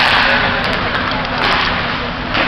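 Ice hockey play on a rink: skate blades scraping the ice with a sudden scrape at the start, and a few sharp clacks of sticks and puck.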